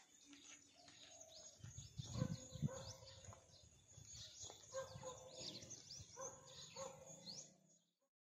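Many birds chirping and calling in quick short notes, with a few low thumps about two seconds in; the sound fades out at the end.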